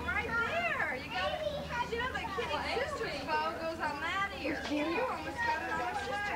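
Several children chattering and calling out over one another, high voices overlapping so that no words stand out, with a low steady hum underneath.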